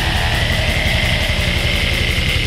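Death/black metal played by a band: rapid, continuous kick-drum strokes under distorted guitars, with a high sustained guitar note held over them. No vocals.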